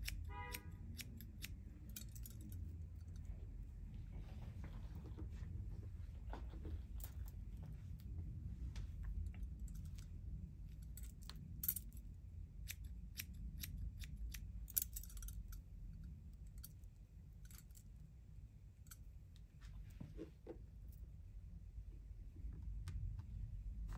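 Hair-cutting shears snipping repeatedly and irregularly as a fringe is point-cut into the hair ends, with two sharper snips past the middle.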